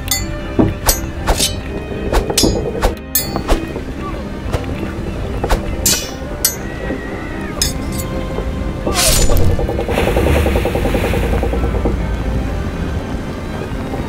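Poles knocking and clacking together in a mock sword fight, a quick run of sharp hits over the first several seconds, then a splash about nine seconds in as a man falls overboard into the lake, all over background music.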